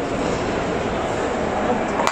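Steady, fairly loud background noise of a busy airport check-in hall: a blur of voices mixed with a constant machinery and air-handling hum.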